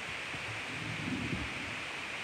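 Steady background hiss with a few faint, soft low rustles and knocks, like light handling near the microphone.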